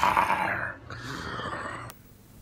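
A man's throaty roar standing in for the MGM lion's roar, given in two goes and cut off abruptly near the end.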